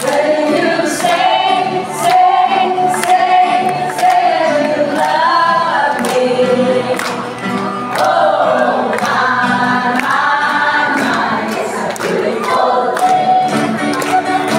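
A group of women singing a song together live through microphones, backed by strummed acoustic guitars with a steady strum about twice a second.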